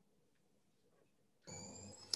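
Near silence. About one and a half seconds in, a faint steady hiss with thin, high, steady tones starts: the background of a call participant's microphone opening just before he speaks.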